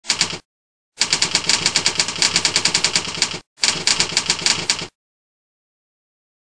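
Typing sound effect: rapid, evenly spaced keystroke clicks in three runs, a very short one, a long one of about two and a half seconds and one of about a second, each starting and stopping abruptly.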